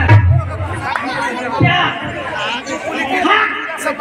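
Voices talking and chattering, amplified through a stage microphone, with a low thump right at the start.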